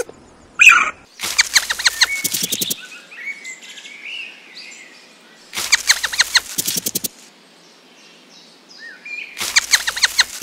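Bird calls: a sharp squeak, then three bursts of a fast trill about four seconds apart, with fainter short chirps between.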